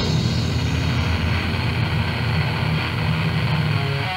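Heavily distorted, down-tuned metal guitars hold one low chord that rings out steadily, with no drums, in a lo-fi cassette demo recording of death/doom metal.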